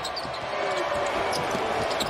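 A basketball dribbling on a hardwood court, with short sneaker squeaks, over the steady noise of an arena crowd.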